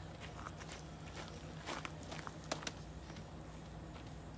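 Faint footsteps on gravel, a few scattered crunches, over a low steady hum.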